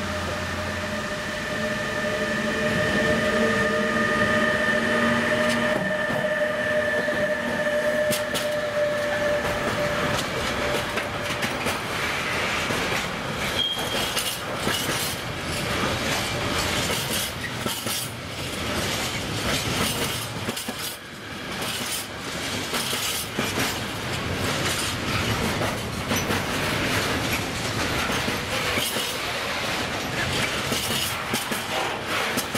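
Bombardier Traxx electric locomotive hauling a container freight train past. For about the first ten seconds the locomotive gives a steady electric whine of several notes, which fades out. Then the wagons roll by with a continuous rumble and rapid clickety-clack of wheels over the rail joints.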